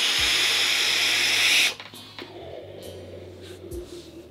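A loud, steady hissing rush of breath as a big cloud of vapor is blown out from a vape mod, lasting under two seconds and stopping sharply; after it only a faint low hum remains.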